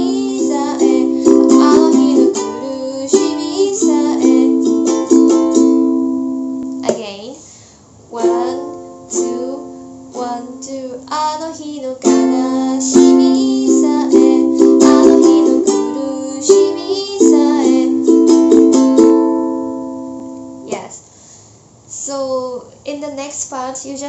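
Ukulele strummed in a down-down-up-up-up-down-up-down-up pattern through the chords F, C, G, A minor, with a woman singing the chorus line in Japanese over it. The line is played twice, with a brief break about seven seconds in, and the playing stops a couple of seconds before the end.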